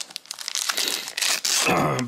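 Shiny foil trading-card pack wrapper crinkling loudly in the hands and tearing as the pack is ripped open.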